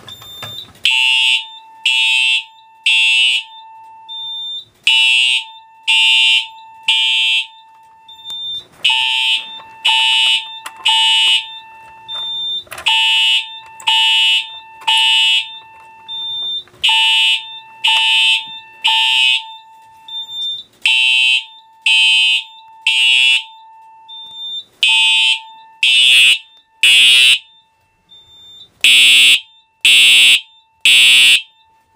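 Simplex 4901-9820 fire alarm horn sounding in the temporal code-3 pattern (three blasts, a pause, repeating), set off by a pull-station alarm. It is very loud, with a faint steady tone running underneath, and the blasts are louder in the last few seconds.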